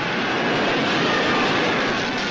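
Steady, dense roar of battle sound from a film soundtrack, with no single blast standing out.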